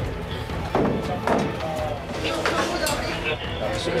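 Indistinct voices of several people talking, with a faint music bed underneath.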